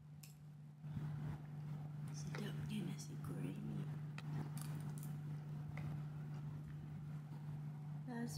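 A woman's muffled voice with no clear words while she eats, over a steady low hum, with a few light clicks of a metal spoon against a plastic food container.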